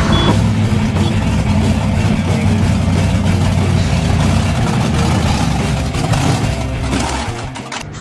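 Monster truck's 540 big-block Chevrolet V8 running as the truck drives by, a loud steady low rumble that drops away about seven seconds in.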